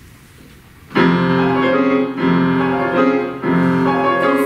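A grand piano comes in loudly about a second in, playing sustained full chords that change roughly every second as the introduction to a song.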